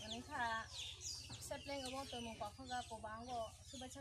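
Chickens clucking with higher bird chirps, under quiet talk between women.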